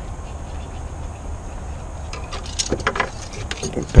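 Engine oil dipstick being handled and slid back into its tube: a few light clicks and scrapes in the second half, over a steady low rumble.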